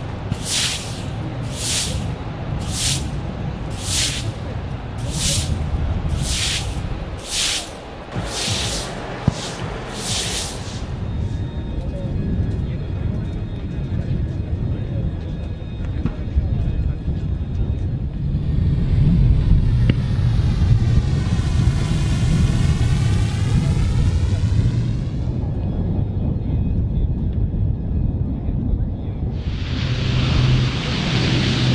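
A jet aircraft passes overhead, swelling up and fading away between about 18 and 25 seconds over a steady low rumble. Before it, for the first ten seconds, comes a regular run of sharp hissing bursts, about three every two seconds.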